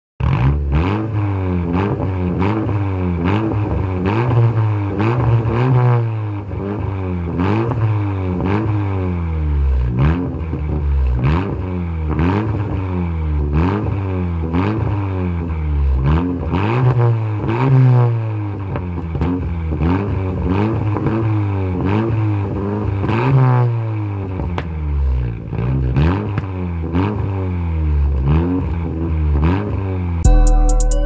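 Honda Civic coupe's engine revved over and over through its exhaust, the pitch climbing and dropping back roughly once a second.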